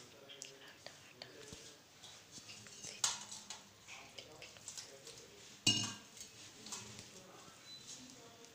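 Hands kneading wheat-flour dough in a stainless steel plate, with soft rubbing and small clicks throughout. There are two sharp metallic clanks, about three seconds in and just before six seconds, as a steel water vessel knocks against the steel plate; the second, louder one rings briefly.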